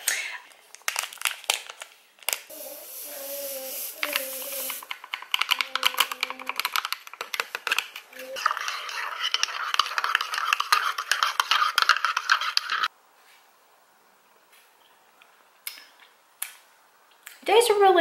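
A metal spoon stirring instant coffee in a ceramic mug, clinking and scraping rapidly against the sides for about four seconds in the second half. Earlier come scattered clicks and a brief hissing sound from handling the drink things.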